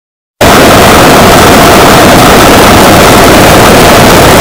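A microwave oven's running hum, boosted until it distorts into a harsh, clipped roar at full volume. It starts suddenly about half a second in and holds steady.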